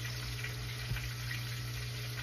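Catfish fillets frying in oil in a cast-iron skillet: a steady sizzle, with a steady low hum underneath.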